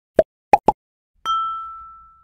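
Intro sound effects for an animated title card: three quick pops, then a single bright ding about a second in that rings out and fades.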